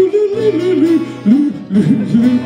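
A man singing a melody to his own acoustic guitar accompaniment, the voice leaping up and down in pitch.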